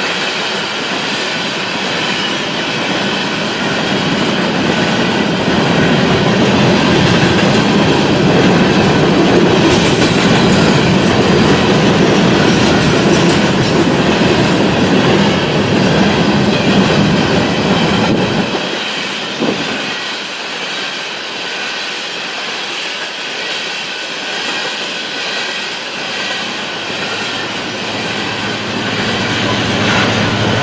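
Coal hopper cars of a freight train rolling past close by: a continuous roar of steel wheels on rail with clickety-clack over the joints. It eases off a little past the middle, and a low steady hum comes in near the end.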